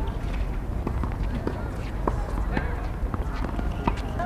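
Sounds of an outdoor hard tennis court between points: scattered short knocks of balls and shoes on the court over a steady low background, with faint distant voices.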